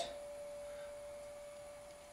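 A faint steady hum on a single pure pitch, slowly fading a little, over quiet room tone.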